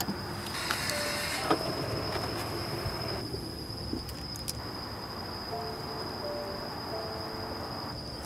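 Outdoor night ambience: a steady high-pitched insect drone over a low rumble, with a few faint clicks.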